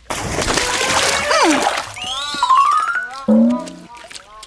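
A sudden loud splash of a body plunging into a swimming pool, the water noise lasting about two seconds. Cartoon music follows, with a quick rising run of notes.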